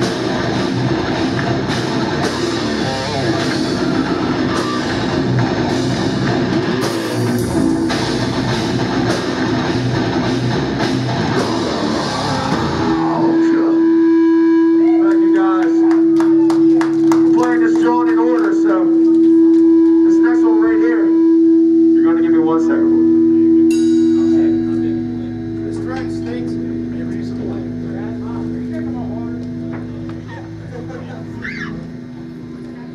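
Heavy metal band playing live with distorted guitars and drums until about halfway, when the song stops and one held note rings on, steady, while voices shout over it; the note drops lower a few seconds before the end.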